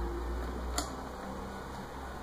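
Low rumble of a handheld camera being moved, with one sharp click just under a second in, over faint room tone.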